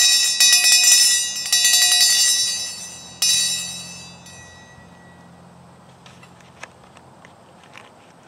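A small hand-held bell rung with a quick run of repeated strokes. A last stroke about three seconds in rings out and fades away over about two seconds.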